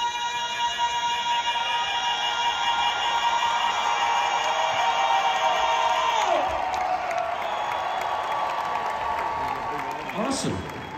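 Group of singers holding a long, high note in harmony, with a lower voice wavering beneath it. The note ends about six seconds in with a falling slide, and the arena crowd cheers.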